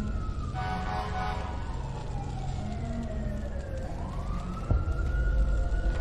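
A siren-like wail that slides slowly down in pitch, then sweeps back up and holds, over a deep rumble. A brief horn-like blare sounds about half a second in, and a sharp hit lands about four and a half seconds in.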